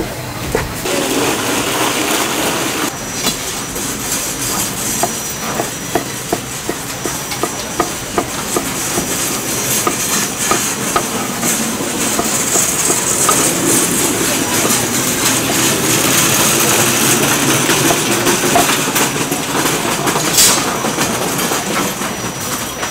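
Kitchen knife slicing boiled pork on a wooden cutting board: a long run of quick, uneven knocks of the blade on the board, over a steady hiss and busy market noise.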